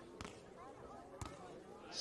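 Two sharp slaps of a hand striking a beach volleyball about a second apart, the serve and then the receiving pass, over a faint crowd murmur.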